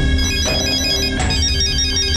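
Mobile phone ringing with a melodic electronic ringtone: a quick stepping tune of high beeps in two short phrases, over background music.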